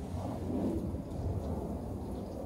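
A steady low rumbling noise outdoors, with no distinct strikes or tones.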